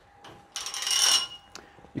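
Metal chain of a weight belt jingling and clinking as it is picked up and handled, for about a second, followed by a light click.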